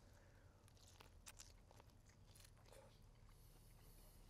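Very faint biting and chewing of barbecued rib meat by two people: scattered small clicks and smacks over near silence.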